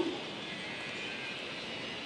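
Steady, even background noise of an open-air city square, with no speech and no distinct event.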